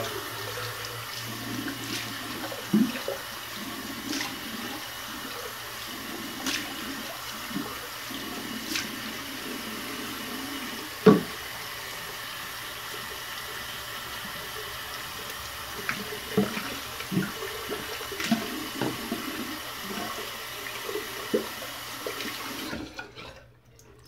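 Cold tap water running into a bathroom sink, with irregular splashes and knocks as a face and a shaving brush are rinsed under it. The tap shuts off suddenly near the end.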